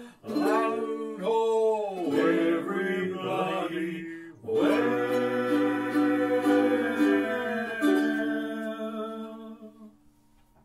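Closing bars of an original ukulele song: ukulele with a wordless voice gliding in pitch in the first couple of seconds, a brief break about four seconds in, then the last chords ringing out and fading away near the end.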